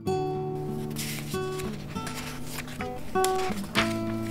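Background music on acoustic guitar: strummed chords and plucked notes that ring on.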